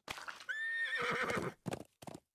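Cartoon sound effect of a horse whinnying, one call about half a second in, followed by a few short clopping knocks near the end.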